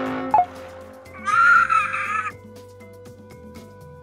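A cartoon bird's call: one high, wavering squawk lasting about a second, over quiet background music with held tones.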